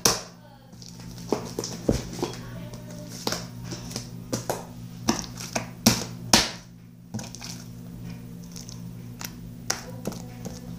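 Brown slime being squished, pressed and slapped by hand on a table, making irregular sticky clicks and small pops, over a steady low hum.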